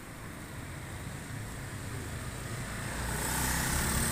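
Small motorcycles approaching along the street, their engines growing steadily louder and passing close near the end.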